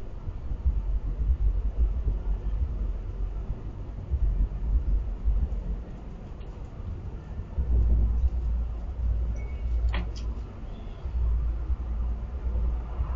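Low, uneven rumble on an outdoor security camera's microphone, swelling and fading, with one sharp click about ten seconds in.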